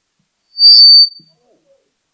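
A single short, loud, high-pitched squeal of microphone feedback through the PA system, lasting about half a second.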